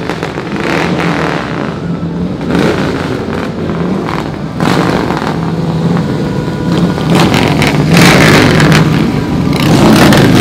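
Motorcycle engines running as bikes ride along the street, getting louder in the second half as one comes up close.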